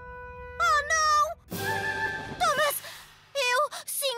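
Cartoon soundtrack: a held music chord under short wordless groans and moans from an animated train character, with a brief rushing burst of noise about one and a half seconds in.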